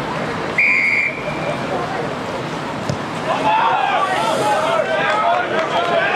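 A referee's whistle gives one short, shrill blast about half a second in, over the murmur of spectators. From about three seconds in, many spectators shout at once.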